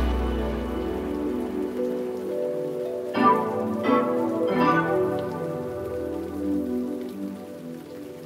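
Background music: the beat and bass fade out, leaving soft sustained chords with a few struck notes about three to five seconds in.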